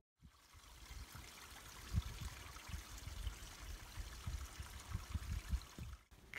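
Faint flowing stream, an even watery hiss, with irregular low thumps of wind on the microphone.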